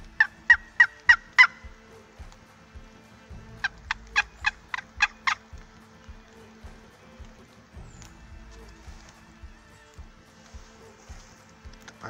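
Wooden turkey call worked by hand, giving a run of five sharp turkey yelps, then a second run of about eight after a short pause.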